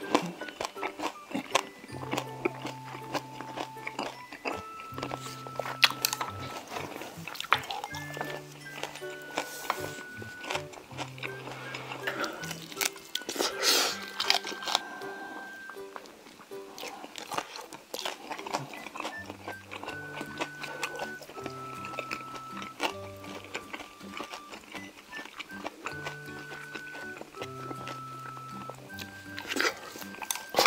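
Close-miked chewing and crunching of steamed monkfish with bean sprouts, with wet mouth clicks and smacks, over background music of short held notes.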